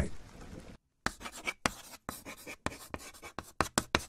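Chalk scratching on a blackboard: after a brief fading hiss and a moment of silence, a quick irregular run of short scraping strokes begins about a second in.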